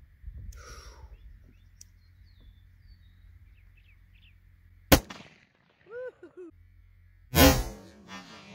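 A single sharp shot from a Mossberg Patriot bolt-action rifle in .270 Winchester, about five seconds in. Near the end comes a second loud, longer bang.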